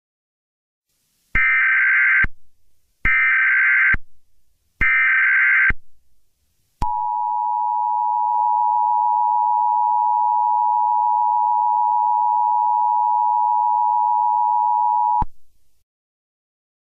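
Emergency Alert System tones: three short bursts of SAME header data, about a second apart, then the two-tone EAS attention signal held steady for about eight seconds and cut off abruptly.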